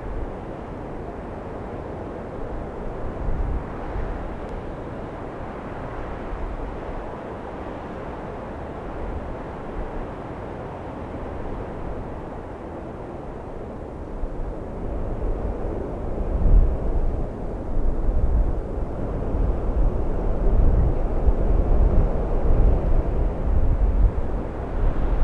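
Outdoor field recording: a steady rumbling noise with gusts of wind buffeting the microphone, growing louder in the second half.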